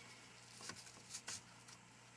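Faint rustling and a few brief soft ticks of linen thread and a button being handled against a paper card, over a low steady hum.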